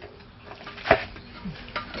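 Gloved hands mixing seasoned greens in a metal bowl: soft rustling and squishing, with one sharper knock against the bowl about a second in.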